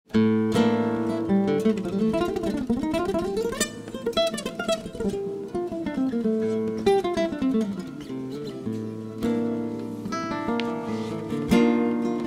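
Acoustic guitar playing an instrumental opening: struck chords, then quick runs of notes rising and falling through the middle, settling back into ringing chords near the end.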